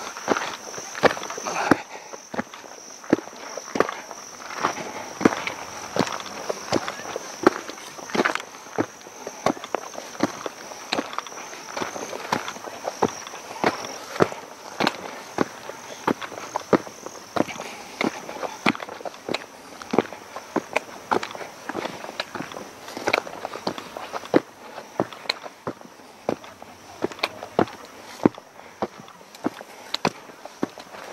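Footsteps of a hiker climbing a rocky sandstone track and stone steps, at an uneven pace of about one to two steps a second. A steady high insect drone runs behind them, fading out near the end.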